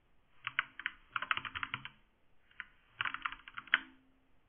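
Computer keyboard typing: quick runs of keystroke clicks in three bursts with short pauses between them.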